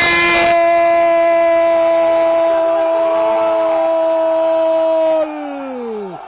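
A male football commentator's long, held shout of 'goal', one steady high note for about five seconds, opening with a short burst of noise, then sliding down in pitch and fading near the end.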